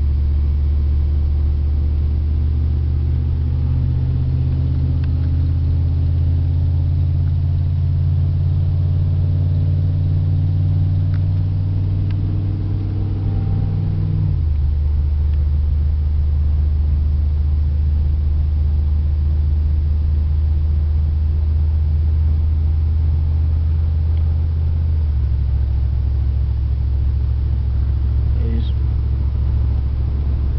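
A Dodge Dakota pickup's engine running on wood gas, heard from inside the cab as the truck pulls away and accelerates. The engine note climbs steadily for about half the time, then drops abruptly at an upshift. It holds steady for a while and changes again near the end.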